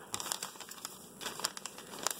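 Glossy plastic snack bags of Hostess Bakery Petites mini brownies crinkling in a hand as they are picked up and moved, in a run of irregular, faint crackles.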